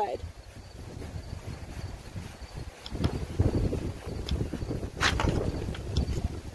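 A small pumpkin carving saw rasping through the pumpkin's flesh as the lid is cut free, with wind rumbling on the microphone. There is a short sharp crack about five seconds in.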